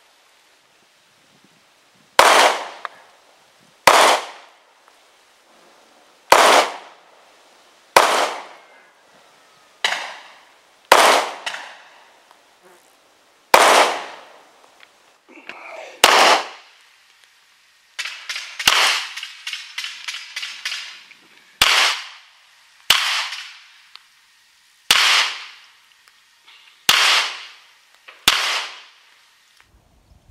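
SIG Sauer P938 SAS Gen 2 9mm micro-compact pistol firing single shots, about fourteen, spaced one to two and a half seconds apart, each sharp crack followed by a short echo.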